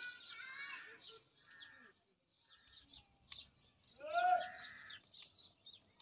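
Small birds chirping, with one louder, roughly one-second pitched call about four seconds in and a few sharp clicks.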